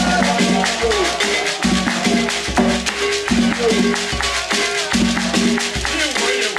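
Traditional Bamoun folk music played on acoustic instruments. Shaken rattles keep a dense, fast rhythm over a low pitched part that sounds in short repeated notes.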